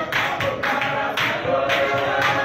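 A congregation singing a praise song together, with rhythmic hand clapping.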